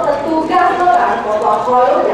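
Speech only: a woman speaking in Hokkien, telling a story aloud without pause.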